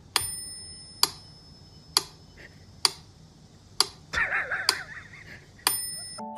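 Mechanical metronome ticking, one sharp click a little under once a second, with a bell-like ring on the first and last beat. A short wavering sound comes in between beats about four seconds in.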